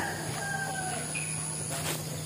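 A rooster crowing, its long drawn-out call ending about a second in.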